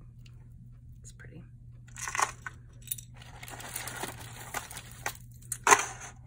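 Plastic bag crinkling and rustling as jewelry is handled, with a louder rustle about two seconds in, a steadier stretch after, and the loudest sharp crinkle just before the end.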